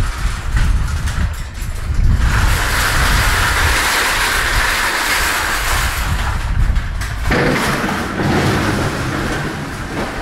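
Parked delivery truck running as it is passed at close range: a loud, steady rushing mechanical noise that swells about two seconds in. About seven seconds in it changes to a lower, steadier hum.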